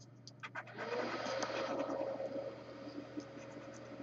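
Scratching the coating off an instant lottery scratch-off ticket: a few light ticks, then from about a second in a steady rasping scrape as the crossword squares are rubbed off.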